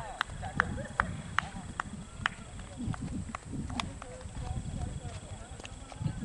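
A run of sharp clicks, about two and a half a second for the first two seconds, then sparser, over a low rumble.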